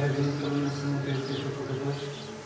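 A man's voice holding one long, steady chanted note in Orthodox liturgical chant.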